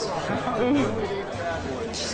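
Indistinct chatter of several people talking at once, with music underneath.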